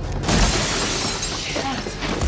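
Glass shattering: a sudden crash about a quarter-second in as a body smashes through a glass panel, followed by about a second of falling, tinkling shards.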